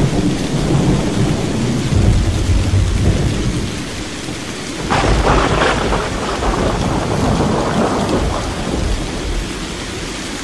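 Thunderstorm: steady rain with rolling low thunder, and a sharp thunderclap about five seconds in that rumbles away.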